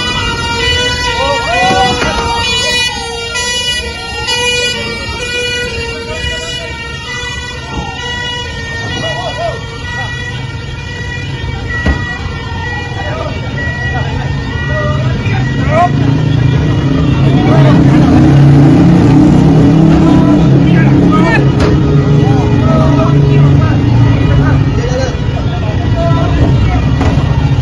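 An emergency-vehicle siren wails, its pitch sweeping down and up about every two seconds over a steady tone, and fades out about fifteen seconds in. A louder low rumble with scattered shouting voices follows.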